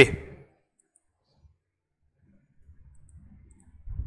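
The end of a spoken word, then a pause of near silence with a few faint clicks, and from about two and a half seconds in a faint low rumble.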